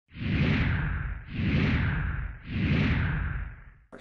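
Three whoosh sound effects from a broadcast logo sting, one after another, each swelling and fading over about a second with a deep rumble underneath; the last dies away just before the end.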